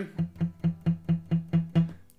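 Acoustic guitar playing a steady run of short palm-muted notes on the fourth string at the second fret (a low E), about four notes a second, eight in all.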